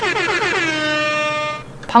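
Comic editing sound effect: one horn-like tone that slides down in pitch and then holds steady for about a second and a half before fading out. It marks a letdown.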